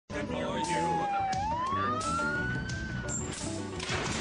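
Police siren wail: one tone that dips slightly, then rises smoothly and fades out about three seconds in, over theme music.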